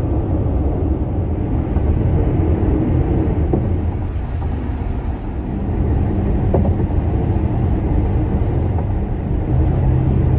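Steady low road and engine rumble of a car driving on a highway, heard from inside the cabin, with a few faint ticks.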